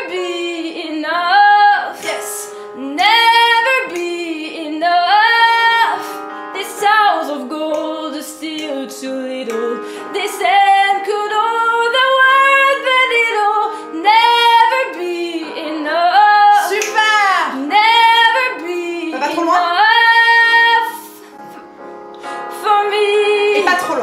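A woman singing a ballad melody without accompaniment, in phrases of held notes that slide up and down between pitches. The voice drops away briefly near the end.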